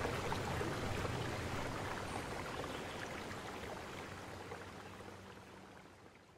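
Steady running-water ambience, a soft rushing noise that fades out gradually until it is almost gone at the end.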